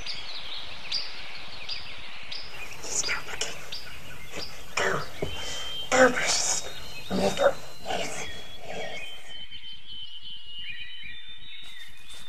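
Forest ambience with birds chirping, and a voice saying "Go! Go precious!" in short outbursts around the middle.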